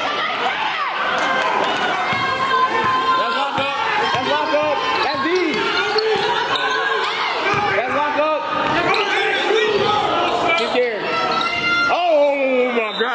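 Basketball game on a hardwood gym floor: a ball dribbling and bouncing, sneakers squeaking as players cut, and players and spectators calling out in a reverberant gym.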